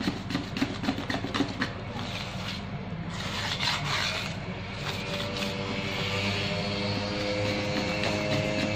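A metal balloon whisk beating thick cake batter in a plastic bowl. It ticks rapidly against the sides for the first couple of seconds, then goes on as a steadier scraping swish.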